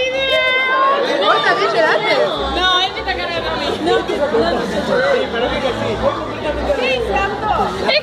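Several people talking at once in overlapping conversational chatter.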